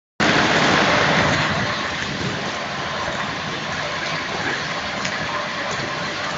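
Steady rushing noise of outdoor street ambience on a handheld recording, loudest in the first second or so and then even.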